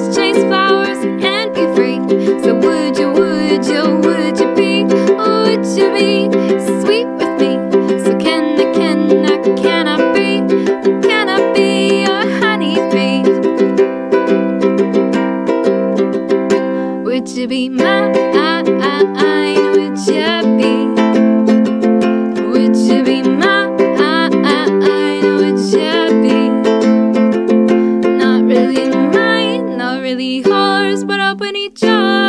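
Ukulele strummed in steady chords, changing chord a little past the middle, with a woman singing along.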